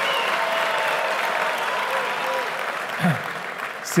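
Large seated audience applauding in a big hall, a steady wash of clapping that thins out in the last second.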